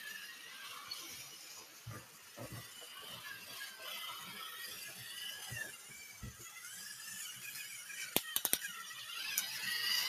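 Toy train rolling along plastic track, its wheels giving a wavering squeal with light rattling knocks. A quick run of about four sharp clicks comes near the end.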